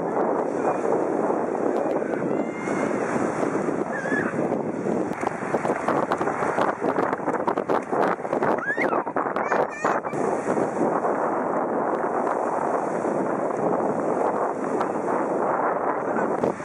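Busy beach ambience: a crowd of bathers talking and calling, with small waves washing in. Sharp close splashes and a few high cries come around the middle.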